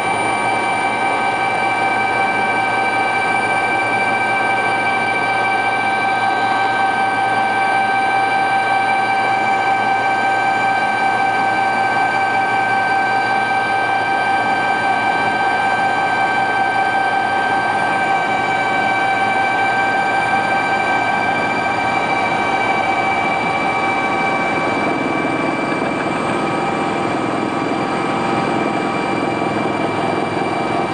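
Helicopter cabin noise in flight: a loud, steady rush with several steady high whining tones over it.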